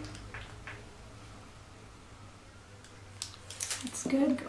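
A steady low hum under a quiet room, then near the end a short run of crisp crinkles and taps as the parchment paper and piping bag are handled.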